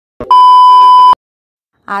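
Television test-pattern beep used as an editing transition effect: one loud, steady, high-pitched tone lasting just under a second that cuts off abruptly, with a short click just before it.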